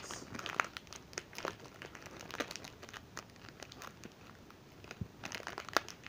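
Plastic wrapper crinkling as it is handled and opened, in irregular crackles that are busiest near the start and again near the end.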